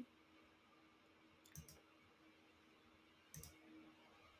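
Near silence with faint, sharp computer mouse clicks: a quick cluster of two or three about one and a half seconds in, and another near three and a half seconds.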